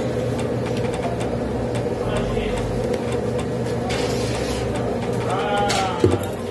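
A steady machine hum, with faint clicks of handling and a short voice-like call near the end.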